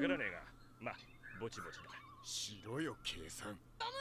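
Quiet Japanese voice-acted anime dialogue from the episode playing underneath: a few short spoken lines with pauses between them.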